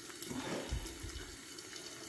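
A bare hand squeezing and mixing mashed tomato chutney in a bowl: quiet, wet squelching of the pulp.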